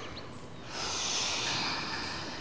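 A person's ujjayi breath during Ashtanga yoga: one long, audible breath drawn through a narrowed throat, starting just under a second in and lasting about a second and a half.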